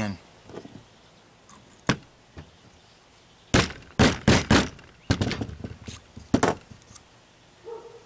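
Rubber mallet tapping a plastic shotgun hull down against a wooden block to seat a shotshell primer flush in its pocket: a quick run of four knocks about halfway through, then a few more spaced taps, with one lighter knock a couple of seconds earlier.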